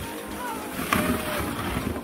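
Background music over the scraping hiss of a plastic sled sliding on packed snow, with a louder bump about a second in.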